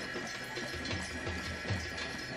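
Music with drumming: a low drum beating in a quick, steady rhythm over a busy, dense background.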